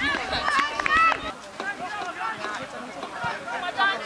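Several people's voices shouting and calling across a football pitch, overlapping one another, loudest about a second in, with a few short sharp knocks among them.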